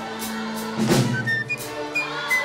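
Orchestral music: held string notes over a steady beat, with a heavy drum hit just under a second in.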